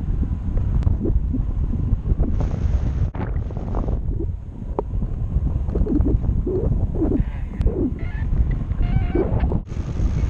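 Wind from flying speed buffeting the microphone of a pole-mounted action camera during a tandem paraglider flight: a loud, gusty low rumble.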